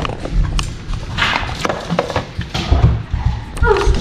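Handling noise from a hand-held phone being carried about: a series of sharp knocks and short rustles with a low rumble.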